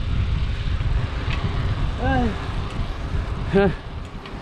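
Wind buffeting the microphone of a camera carried on a moving bicycle, as a steady low rush. Two short voice sounds come about two seconds in and near the end.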